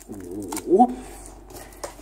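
A protective plastic film being peeled off a tablet's screen, a faint rustle with a few sharp clicks in the second half. Over it, early on, a man makes a short wordless vocal sound that rises in pitch.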